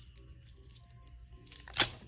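Washi tape being picked at and torn from its roll, with one short, sharp rip near the end, over faint background music.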